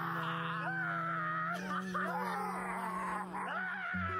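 Pop song: a voice wailing in a mock-crying style, its pitch bending and sliding over held low bass and chord notes.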